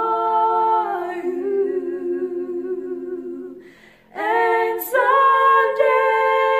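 Two women singing a hymn a cappella in harmony, holding long notes. The phrase fades out about three and a half seconds in, a quick breath follows, and a new phrase begins just after four seconds.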